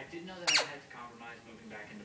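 A single short, high squeak about half a second in, falling quickly in pitch, from a puppy playing with a small red ball. Faint television talk runs underneath.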